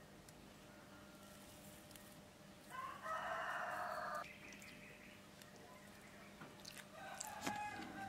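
A rooster crows once about three seconds in, one long call. Near the end comes a shorter, weaker call mixed with a few light clicks.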